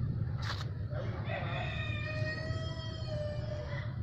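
A rooster crowing once, a single long drawn-out call starting about a second in, over a steady low hum; a short sharp click comes just before it.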